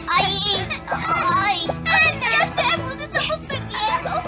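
High-pitched dubbed voices of several puppet characters shouting and calling out excitedly, not as clear words, over steady background music.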